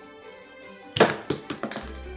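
A LEGO spring-loaded cannon firing: a sharp plastic click about a second in, followed by a few small plastic clatters as the shot strikes the model and falls, over quiet background music.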